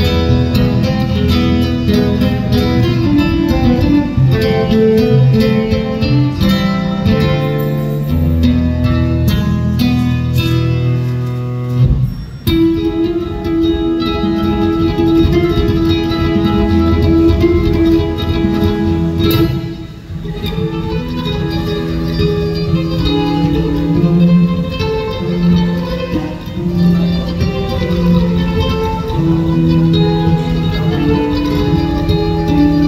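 Solo classical guitar playing a flamenco-style piece: a continuous run of plucked notes and strums, with brief dips in loudness about twelve and twenty seconds in.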